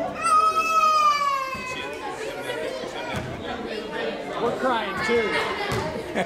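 One long, high-pitched voiced call lasting about two seconds and sliding down in pitch. It sounds like a child shouting from the sidelines in a school gym, followed by the mixed chatter of spectators echoing in the hall.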